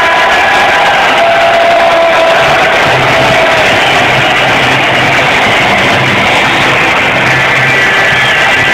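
Loud music played over an ice-hockey arena's sound system, steady throughout.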